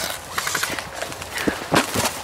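A few irregular sharp knocks and clicks, starting suddenly, with the loudest one near the end.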